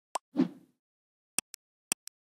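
Intro sound effects: a short click and a soft low plop near the start, then two double clicks like a computer mouse button pressed and released, the pairs about half a second apart.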